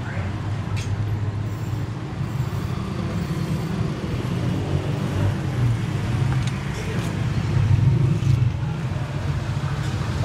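Steady low background rumble, with a few faint clicks of a butcher's knife cutting around a beef shank on a wooden chopping block.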